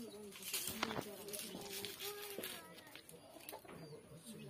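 A dove cooing: low, drawn-out coos.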